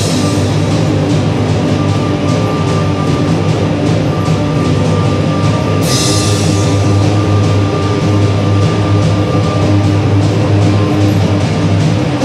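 Rock band playing live without vocals: electric guitars, bass guitar and drum kit in a loud, sustained passage, with a cymbal crash about six seconds in.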